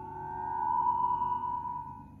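A held electronic tone with a fainter lower tone beneath, swelling and then fading: an eerie synthesized sound-effect cue.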